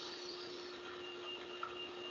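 Faint steady electrical hum with a faint on-off high whine from about halfway through and one small click near the end, heard in the playback of a robot demonstration recording.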